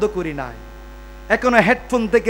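A man's voice over a public-address system: a long falling note trailing off, then a pause of about a second filled only by the sound system's steady mains hum, then the voice coming back in a drawn-out, sung-sounding line.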